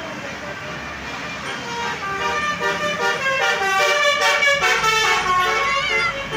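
A bus's basuri, a musical multi-trumpet air horn, playing a quick tune of stepped notes that starts about a second and a half in, over passing traffic.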